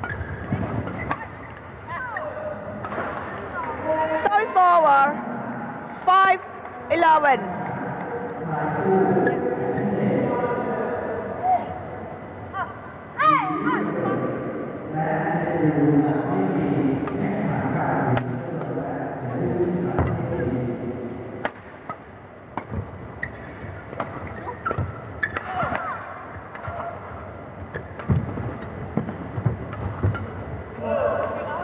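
Badminton rally sounds: players' court shoes squeaking sharply on the court mat a few times in short bursts, and rackets hitting the shuttlecock with sharp clicks, over a steady murmur of voices.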